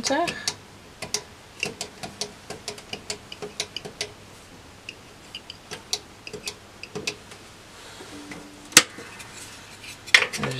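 Buttons on a heat press's temperature controller clicking in quick, irregular succession as the set temperature is stepped down, followed by a brief low tone and one sharper, louder click near the end.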